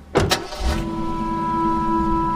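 A car door slams shut with a double thud just after the start. The SUV's engine then starts and idles with a low rumble, under a held music tone.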